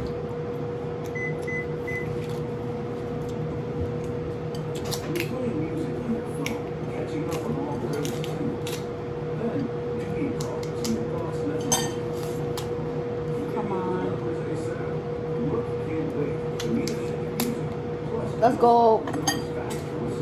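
Scattered light clicks and clinks of forks and utensils against dishes during a meal, over a steady hum, with a few low voices.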